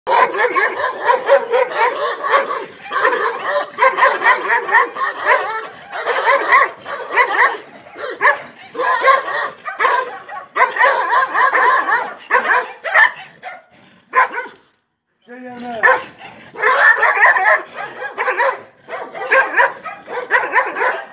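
Two large white dogs barking and yelping at each other as they tussle, almost without a break, with a short lull about three-quarters of the way through. A man calls to the dogs about five seconds in.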